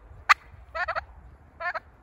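Domestic turkey calling: one sharp, clipped note, then two short quavering calls.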